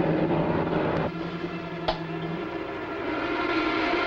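Light aircraft's piston engine droning steadily in the cockpit, with a hiss that grows toward the end and a short click near the middle.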